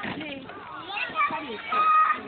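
Children's voices in outdoor play: overlapping chatter and calls, with a loud, high-pitched child's shout held near the end.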